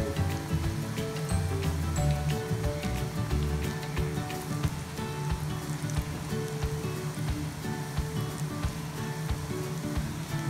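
Onion pakoda batter deep-frying in hot oil, freshly dropped in and sizzling with a dense, steady crackle, heard under background music.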